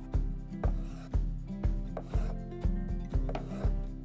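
Kitchen knife slicing through a peeled avocado onto a wooden cutting board, a few soft cuts about halfway through and later. They are heard under background music with a steady beat about twice a second, which is the loudest sound.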